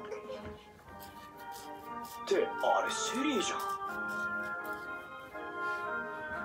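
Anime episode soundtrack: sustained background music chords, with a character's voice speaking briefly about two seconds in.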